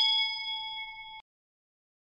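Notification-bell 'ding' sound effect of a subscribe animation: a bright bell-like chime, struck just before, rings out and fades, then cuts off abruptly a little over a second in.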